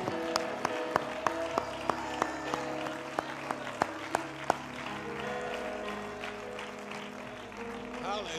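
Hand clapping in a steady rhythm, about three claps a second, over soft sustained musical chords. The clapping stops about halfway through while the chords carry on, shifting to a new chord a little after that.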